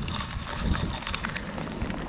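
Wind buffeting the microphone: a steady low rumble, with a few faint scattered clicks.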